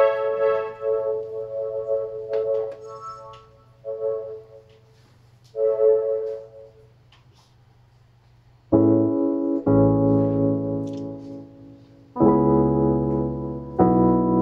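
Roland FP-4 digital piano played solo: a few separate held notes with pauses between them, then from about nine seconds in loud full chords with deep bass notes, struck again a few seconds later.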